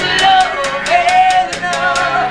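Live hard-rock band playing: a sustained, bending lead melody over bass and a steady drumbeat of about four strokes a second.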